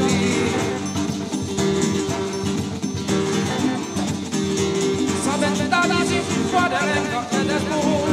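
Live band playing Indian Ocean creole fusion music: a voice singing over acoustic guitar, drum kit and hand drums.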